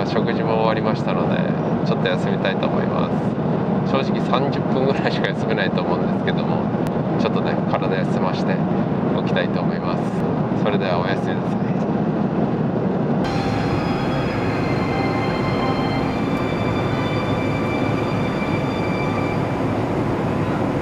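Steady in-flight cabin noise of an Airbus A350-900 airliner: engine and airflow rumble filling the cabin, with a muffled voice over it for the first two-thirds. About two-thirds through, the noise changes abruptly to a slightly different steady rumble with faint high tones as the aircraft is low on approach.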